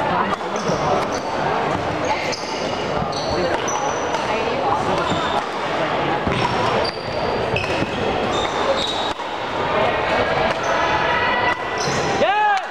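Badminton rally on a hardwood gym floor: repeated sharp racket hits on the shuttlecock and short, high-pitched sneaker squeaks as the players move.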